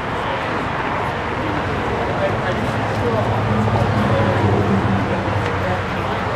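Bystanders talking, with the low steady hum of an idling car engine that swells about three seconds in and eases off near the end.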